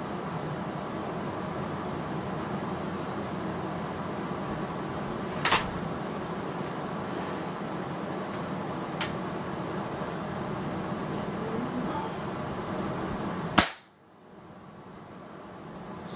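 A single shot from a Hatsan Striker 1000x .22 break-barrel spring-piston air rifle near the end, one sharp crack, the loudest sound here. Two lighter clicks come earlier, the first about five seconds in, over a steady background hum.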